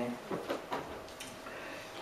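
A few soft clicks from a handheld microphone being handled, over quiet room tone, just after the end of a spoken word.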